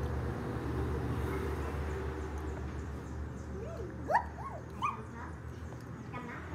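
A few short, high whining calls from an animal, rising and falling in pitch, about four to five seconds in, over a steady low hum.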